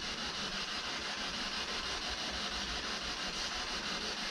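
Steady hiss of radio static from a spirit-box style device scanning radio frequencies.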